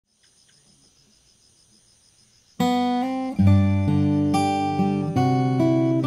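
Faint insect chirring, then about two and a half seconds in an acoustic guitar comes in loudly, playing slow chords that ring on, with the insects still chirring beneath.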